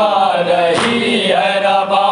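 Men's voices chanting a noha, an Urdu Shia lament, together in a slow melody of long held, wavering notes.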